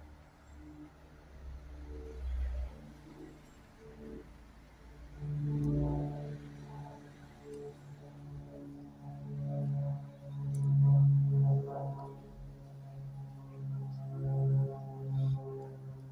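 A low tune in long sustained notes that step from pitch to pitch, faint at first and fuller from about five seconds in.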